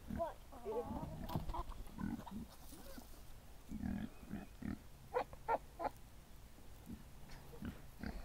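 Backyard hens softly clucking and murmuring as they peck at a pan of mixed seed feed, with a run of short, quick clucks about five seconds in.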